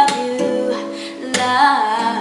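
Acoustic guitar strummed, a chord near the start and another about a second and a half in, with a woman's wordless sung run wavering in pitch near the end.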